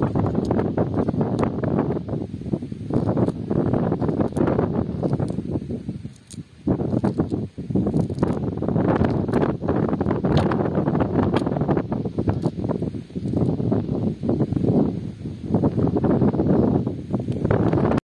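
Wind buffeting the microphone, a continuous rough rumble with rustling and scattered light clicks. It dips briefly about six seconds in.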